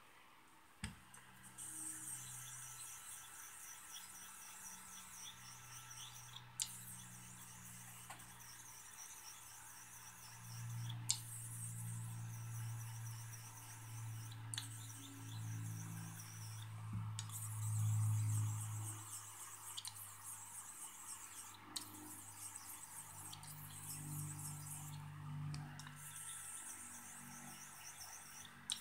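Stainless Henckels straight razor honed on a slurried Nakayama Japanese natural whetstone: a faint, rapid scraping of steel through slurry, in runs of quick strokes a few seconds long separated by brief pauses and small clicks. The strokes work only a small area of the stone, refining a bevel set on a 600 diamond plate with a stone described as super fast cutting.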